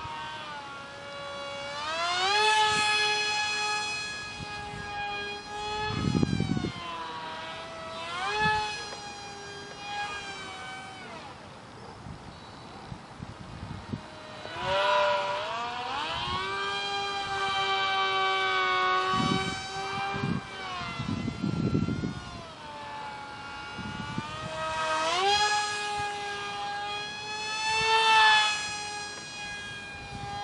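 Tiny 8 mm electric motor of a micro foam RC delta wing, direct-driving its propeller, whining at a high pitch that rises and falls again and again as the throttle is worked in flight. A few short low rumbles come through, about six and twenty-one seconds in.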